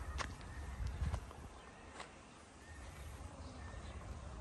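Footsteps on rubble-strewn ground, a sharp step about once a second, over a low steady rumble.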